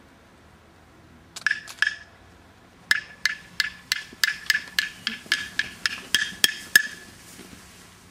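A small hand percussion instrument struck with a clear ringing pitch: three quick strikes about a second and a half in, then a steady run of about fourteen strikes at a little over three a second, growing louder before stopping about seven seconds in.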